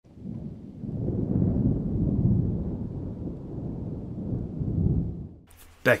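A low, crackling rumble like rolling thunder that builds over the first second or two and dies away about five and a half seconds in.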